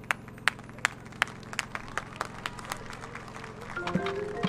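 Sharp percussive clicks from the marching band's percussion in a steady beat, about three a second, over a low steady hum.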